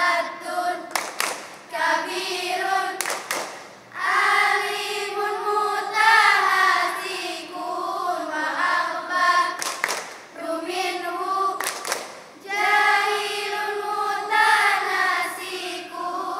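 A choir of girls chanting Arabic nadham verse in unison, phrase by phrase with short breaks between lines. A few sharp hand claps fall between the phrases.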